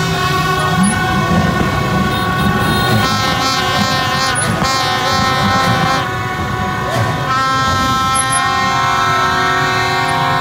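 A chorus of horns blown at once, plastic vuvuzela-style trumpets among them, holding long overlapping notes at many different pitches over the noise of a mass of motorbikes. It stays loud and steady throughout, with a slight dip about six seconds in.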